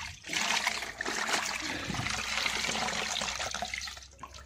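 A cloth being squeezed and wrung out in a plastic bucket of brown wash water, the liquid pouring and splashing steadily back into the bucket. The splashing stops shortly before the end.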